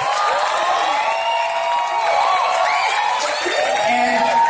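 Audience cheering and applauding, many voices calling out at once over clapping.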